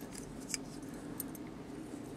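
Quiet room hum with a few faint, light clicks of small metal fly-tying tools being handled as a feather is wound onto the tube.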